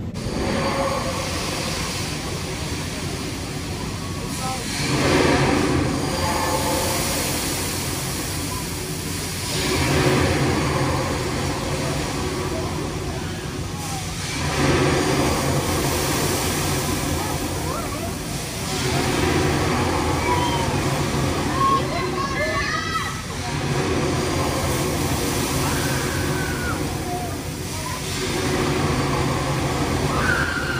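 Barnstormer giant pendulum swing ride swinging back and forth: a rush of air swells about every five seconds as the arms pass. Riders' voices and screams are mixed in.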